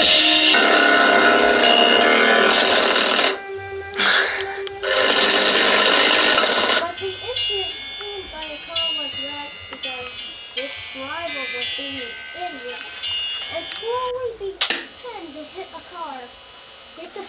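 Music played loud through a three-way center-channel speaker under test, cutting out twice for a moment around three to five seconds in. From about seven seconds it plays quieter, with a voice singing over it.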